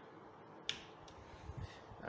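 A single sharp click about two-thirds of a second in, followed by a fainter tick, over faint room tone.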